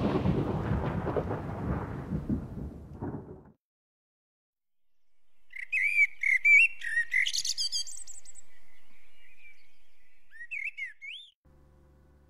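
A deep rumble like a fading boom dies away over the first three and a half seconds. After a moment of silence a bird chirps and whistles in quick rising and falling notes, with one longer held note.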